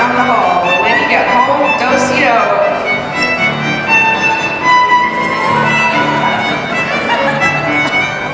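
Lively fiddle tune accompanying square dancing, with voices over the music during the first couple of seconds.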